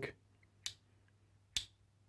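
Two short, sharp clicks about a second apart: the steel hammer and anvil of a cordless impact wrench's impact mechanism knocking together as they are turned by hand.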